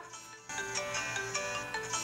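Mobile phone ringtone playing a melodic tune for an incoming call, with a short break just under half a second in.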